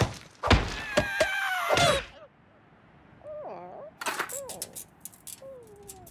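Cartoon sound effects: a run of heavy crashing impacts with ringing, gliding tones for about two seconds. Then come a few short vocal sounds from a cartoon character that bend up and down, a thunk about four seconds in, and a falling groan near the end.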